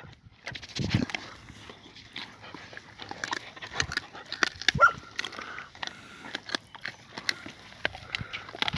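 Hunting dogs close by feeding on raw wild boar meat and bone: scattered clicks and small crunching noises of gnawing and moving about, with one short rising squeal a little under five seconds in.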